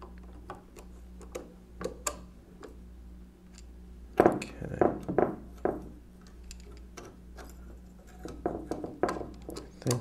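Small metallic clicks and clinks of a screwdriver and screw working against a mechanical calculator's metal frame as the screw is driven in, with a few louder knocks about four to six seconds in.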